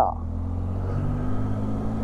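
Motorcycle engine running steadily under light throttle as the bike gently picks up speed, with road and wind noise.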